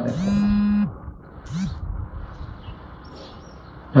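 A man's voice holding one drawn-out syllable on a steady pitch for almost a second. About a second and a half in comes a short hum that rises and falls, and then quiet room tone.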